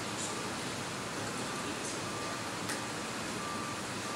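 Steady room tone: an even hiss with no speech, broken only by a few faint clicks.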